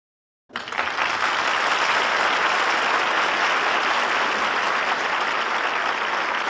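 Studio audience applause, starting suddenly about half a second in and holding steady.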